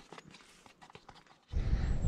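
Faint, irregular clicks and taps at first, then, about three-quarters of the way in, a sudden switch to a steady low rumble of wind on the microphone.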